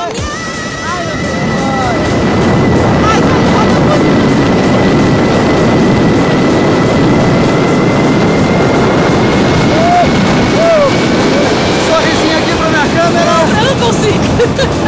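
Wind rushing over the camera microphone during a tandem parachute descent under an open canopy, building up over the first two seconds and then holding steady, with a few short voice whoops on top.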